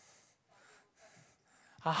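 A man's faint breaths into a close microphone during a pause, three short puffs. Near the end he says "Ah".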